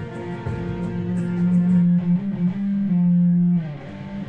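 Guitar playing held chords without singing, the notes ringing out and dying away near the end.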